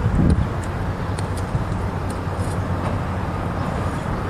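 Steady low rumble of city traffic, with a brief low thump just after the start and a few faint scattered clicks.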